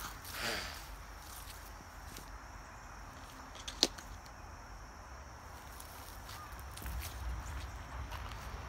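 A short breathy puff as a child blows through a plastic bubble wand, then quiet outdoor ambience with low wind rumble on the microphone and a single sharp click about four seconds in.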